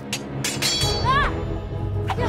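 Swords clashing: a few sharp metal strikes, one followed by a brief high ringing note, over background music. A short high-pitched cry rises and falls about a second in.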